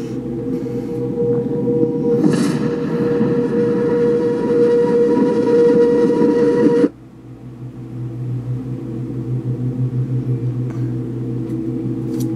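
Dramatic sound-effect drone: a loud, steady rumbling hum with held tones that swells about two seconds in and cuts off suddenly about seven seconds in, followed by a quieter low hum that pulses.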